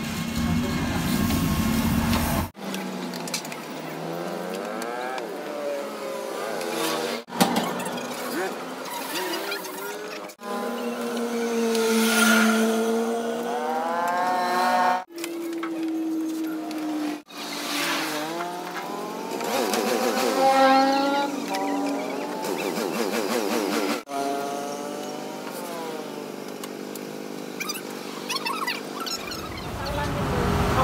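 Motorcycle engines revving, their pitch rising and falling in long swells, broken into several pieces by abrupt edits.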